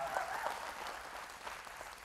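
Church congregation applauding, dying away toward the end.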